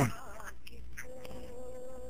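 A sharp knock right at the start, then a thin, steady buzzing tone from about a second in, over a faint hiss on the line.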